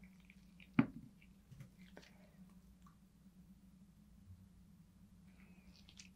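Quiet room with a steady low hum. About a second in there is one sharp plastic click, then a few faint small taps, from handling a small plastic alcohol ink dropper bottle over the silicone molds.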